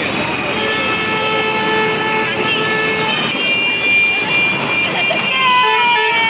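Vehicle horns sounding in busy street traffic: one long steady horn for about two and a half seconds, then a second, higher-pitched horn from about five seconds in, over a constant traffic din.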